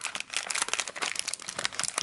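Foil blind-bag wrappers crinkling in rapid, dense crackles as they are handled and pulled out of a cardboard box.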